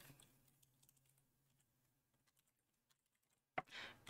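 Faint typing on a computer keyboard, scattered light key clicks over near silence.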